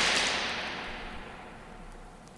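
The last chord and crash of a rock song ringing out on a vinyl record and fading away, the high end dying first. It leaves a faint low rumble with a couple of tiny clicks in the gap before the next track.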